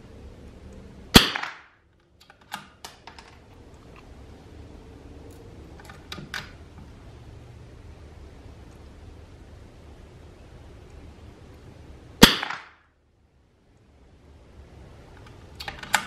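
Two shots from a .22 LR rimfire rifle, about eleven seconds apart, each a sharp crack with a short ringing tail. Small metallic clicks come between and after the shots as the rifle's action is worked.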